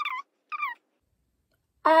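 A woman's short, high-pitched squeaks of pain, twice, then near the end a loud, drawn-out 'oh' cry as she forces an earring through a sore, swollen ear piercing.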